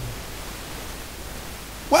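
Steady hiss of room and microphone background noise. A man's voice comes in over a microphone just at the end.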